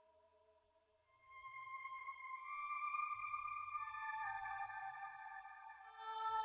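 Background music of held synthesizer tones: the sound fades almost to nothing about a second in, then a new chord of sustained notes comes in and builds in layers over a low rumble.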